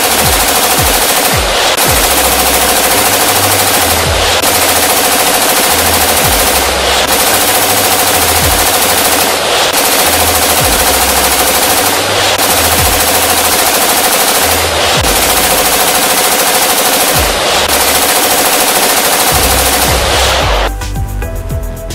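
Loud machine-gun sound effect: continuous rapid automatic fire in a loop that breaks off briefly about every two and a half seconds and starts again.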